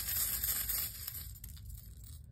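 Small charms being stirred and shaken together by hand, a rustling noise that dies away about a second in.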